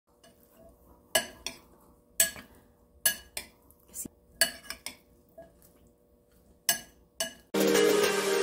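Metal spoon clinking against a white ceramic bowl while stirring diced mango and salted egg: about a dozen sharp, irregular clinks, with soft squelching of the food between them. Music starts suddenly near the end.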